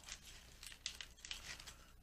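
Plastic fork tossing salad greens in a clear plastic salad bowl: faint crisp rustling of lettuce with a few light clicks of fork on plastic.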